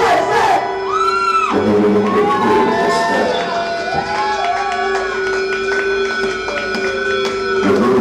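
Live band music: a steady held drone with several wavering, arching electronic pitch glides over it.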